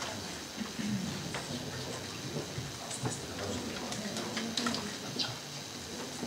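Quiet murmur of an audience in a conference hall: faint low voices, with scattered small clicks and knocks.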